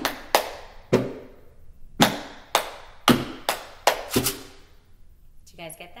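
Hand claps beating out a written rhythm: about nine sharp claps in an uneven pattern of short and longer gaps, each with a brief room echo. A woman's voice starts just before the end.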